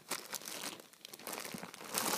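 Thin plastic bag crinkling and rustling in irregular bursts as a cat moves and paws inside it.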